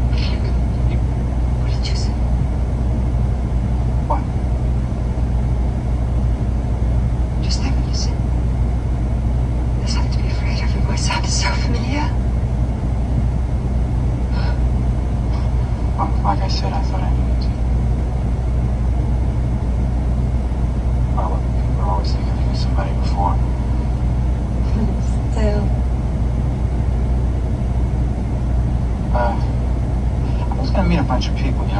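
Steady low rumble of an idling vehicle engine, with faint, broken-up film dialogue heard over it every few seconds.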